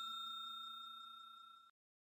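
The fading ring of a bell-chime sound effect on the subscribe end card: a few steady tones dying away over about a second and a half.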